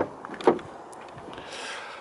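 Rear passenger door of a Land Rover Discovery being opened: a latch clunk at the start and a second knock about half a second in, then a faint rub near the end as the door swings open.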